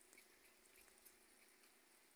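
Near silence: faint background hiss with a few tiny ticks.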